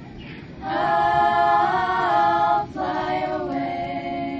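A group of women singing together, with a long held note starting under a second in and breaking off briefly before a new sung line.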